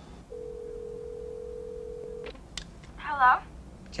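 A telephone ringing tone in the handset, one steady tone for about two seconds, then a few clicks as the call is picked up and a thin voice answers over the line.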